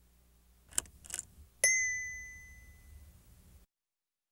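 Logo sound effect: two quick swishes, then a single bright ding about a second and a half in that rings on and fades away. A faint low hum lies under it, and the sound cuts off abruptly near the end.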